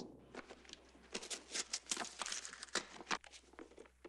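A pencil scrawling a signature on paper: an irregular run of short, faint scratching strokes.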